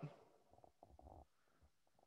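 Near silence in a pause between spoken phrases, with a few faint low sounds a little after half a second in.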